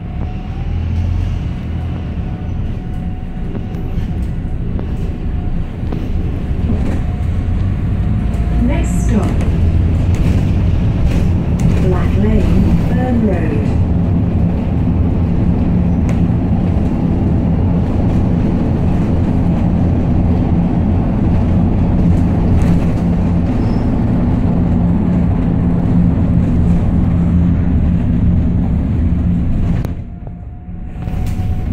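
Single-deck bus engine and drivetrain heard from inside the passenger cabin as the bus pulls away and runs along the road: a steady low drone that grows louder over the first several seconds, then holds.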